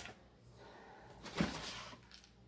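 Mostly quiet room tone with one short knock about one and a half seconds in as a large metal food can is handled, then faint handling noise.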